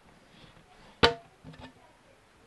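A single sharp click about a second in as hands handle a plastic boat portlight frame, ringing briefly, followed by a few faint soft handling sounds.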